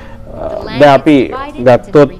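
Speech only: a man's voice narrating.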